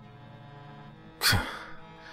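A man's sigh, a single short exhale a little over a second in, over background music holding a steady drone.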